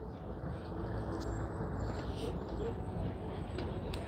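Street ambience: a steady hum of road traffic, with faint voices of passers-by.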